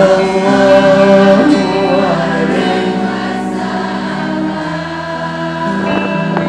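Sholawat, a devotional song praising the Prophet Muhammad, sung by many voices together over music, in long held notes that change pitch a few times.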